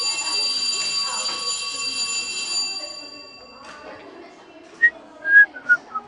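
A school bell rings with a steady, high metallic tone, starting suddenly and fading out after about three seconds. Near the end, a few short whistled notes begin.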